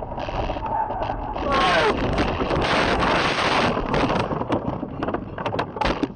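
A car crash heard from inside the cabin. A loud, noisy crash begins about a second and a half in and lasts about two seconds, then scattered sharp knocks and clicks follow as the windshield is left shattered.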